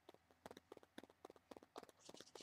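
Near silence with faint, irregular light clicks scattered through it.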